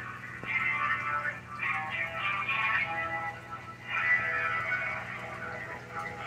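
Music playing through a phone's speaker with thin, telephone-quality sound, in phrases about a second long, over a steady low hum.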